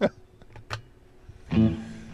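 Fender electric guitar: a couple of light string or pick clicks, then a chord strummed about one and a half seconds in that rings out and fades.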